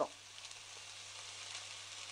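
Chana dal vada batter frying in hot oil in a small pan, with a steady, even sizzle.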